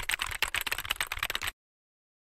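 Computer keyboard typing sound effect: a rapid run of key clicks that stops about one and a half seconds in, matching the on-screen text being typed out letter by letter.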